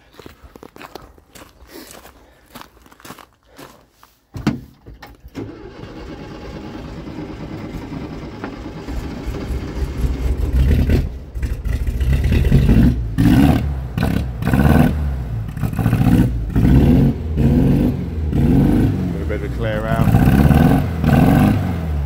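VW T2 Bay camper's air-cooled flat-four engine, started with a temporary wire run to the distributor: a few seconds of clicks, then it catches about four seconds in and keeps running, growing louder, its note rising and falling in the second half.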